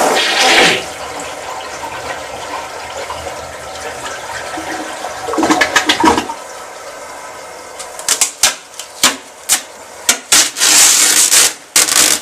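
A toilet flushing: a loud rush of water at the start that settles into a steady run of water. In the last few seconds comes a quick run of sharp clicks and knocks, with a short loud burst of noise among them.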